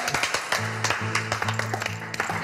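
Applause, many hands clapping, as the singing stops. Background music comes in about half a second in, with low repeated notes.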